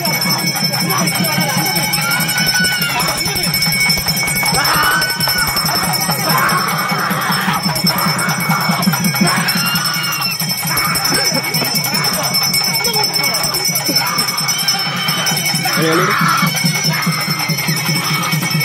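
Loud festival music from a Dasara troupe: fast, steady drumming with bells jingling over it and voices in the background.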